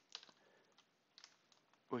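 A few faint keystrokes on a computer keyboard, spaced about a second apart.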